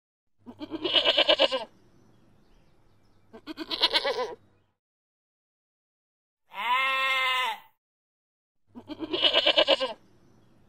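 Goat bleating four times, each call about a second long. The first, second and last calls waver quickly, and the third is smoother and rises and falls in pitch.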